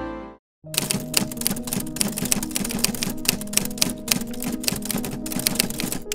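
Music fades out, and after a brief silence a new background music track starts, carrying rapid, irregular typewriter-like clicking over soft sustained notes.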